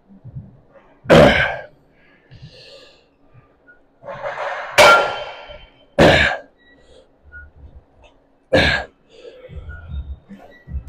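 A man's forceful exhalations and strained grunts, about four of them two to three seconds apart, one with each hard rep of a lying leg curl. He is straining on a last set taken to failure.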